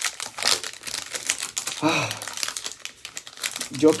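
Crimped foil wrapper of a Topps baseball card pack being torn and peeled open by hand, a long run of crinkling and crackling.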